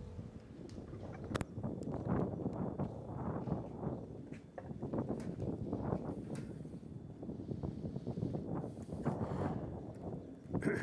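Irregular shuffling and handling noise as people move about and settle after being told to be seated, with a sharp click about a second and a half in.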